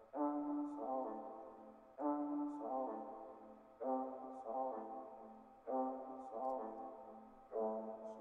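Sampled horn-section chop pitched down an octave, looping in a hip-hop beat: a two-note brass phrase that repeats about every two seconds.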